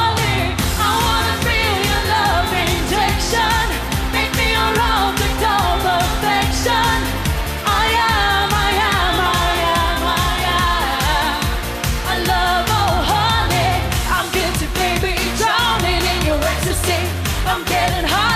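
Live pop song: a woman singing lead over an up-tempo backing track with a steady beat.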